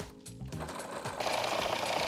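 Viking food processor switched on: the motor starts about half a second in and runs steadily, its blade chopping bread into coarse crumbs.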